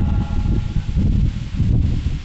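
Wind buffeting the microphone: a loud, uneven low rumble that rises and falls, in a pause between spoken phrases.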